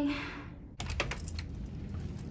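A brief voice sound at the very start, then, after a sudden cut, a quick run of light clicks and knocks over a low steady hum.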